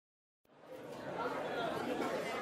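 Indistinct background chatter of voices, fading in out of silence about half a second in and building over the next second.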